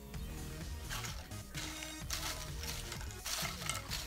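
Music from a television playing in the room, under close-up chewing and mouth sounds of someone eating a cheeseburger, with a few short noisy bursts from the chewing.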